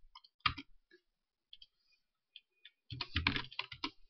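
Computer keyboard and mouse clicks: one sharp click about half a second in, a few faint ticks, then a quick run of clicks and keystrokes near the end.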